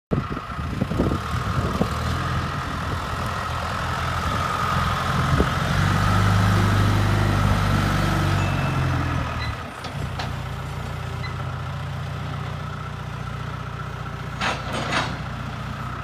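John Deere backhoe loader's diesel engine running, working harder and loudest around the middle with a faint whine over it, then dropping suddenly to a steady idle about ten seconds in. A few knocks sound early on.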